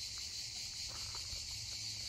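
Steady high-pitched chorus of insects, with a low steady hum beneath it.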